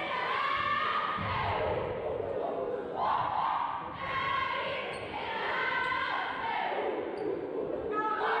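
A group of girls' voices chanting a team cheer together in long drawn-out calls, echoing in a large gym.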